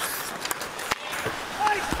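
Ice-rink game sound: a steady hiss of crowd and skates on the ice, with two sharp clicks of stick on puck about half a second and about a second in.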